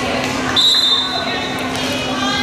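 Referee's whistle blown once, a short high blast about half a second in, signalling the server to serve. Just before it a volleyball bounces on the hardwood gym floor, with crowd chatter echoing in the gym throughout.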